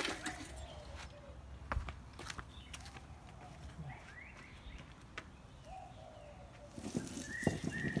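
Small birds chirping in short calls, a few near the middle and more near the end, over a few sharp clicks and scrapes and a louder rustling stretch near the end.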